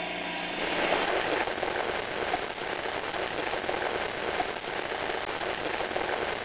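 Sound effect of a pressure pump forcing treatment solution into a treating cylinder: a steady rushing, crackling noise like pouring rain or flowing liquid, with a faint pump hum that fades away in the first second or so.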